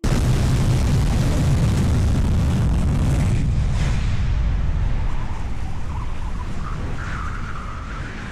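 SpaceX Starship's Raptor engines firing their landing burn as the ship comes down into the sea, heard from water level: a loud, deep rumble with hiss that starts abruptly, then fades gradually through the second half as the ship settles into the water amid steam.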